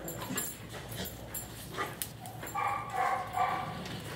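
A dog whining, a wavering high-pitched whine in a few pulses starting a little past halfway, after a scatter of short clicks and knocks.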